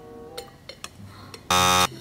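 A loud electronic buzzer sound effect, a single flat buzz of about a third of a second near the end, starting and stopping abruptly: a 'wrong answer' buzz marking the attempt as a failure.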